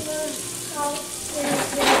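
Sausage sizzling in a frying pan while it is stirred and broken up, with a louder scraping rush near the end.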